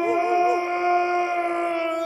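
A long held vocal note, like a howl, steady in pitch, with a brief wavering voice over it early on; near the end it slides down and begins to waver.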